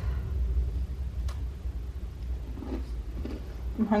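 A steady low rumble, with a faint click about a second in.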